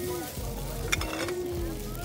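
Glass bottles clinking once, sharply, about a second in as a hand moves among them. A person's voice holds a steady 'mmm' underneath.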